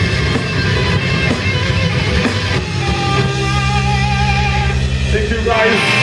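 Death metal band playing live: distorted electric guitars, bass and drums. In the second half, fast, even low drum pulses run under a held chord, then the drums stop about five and a half seconds in while guitar rings on.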